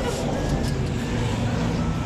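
Steady low rumble of a motor vehicle running, with street traffic noise.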